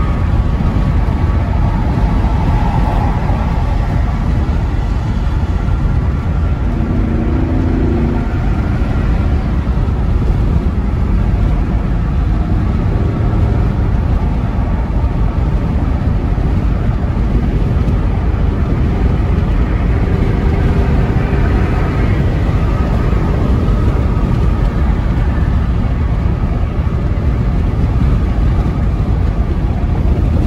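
Steady road and engine noise inside the cab of a 2001 Ford E-350 camper van cruising at highway speed.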